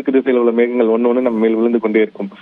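A man speaking over a telephone line, his voice thin and narrow as on a phone call.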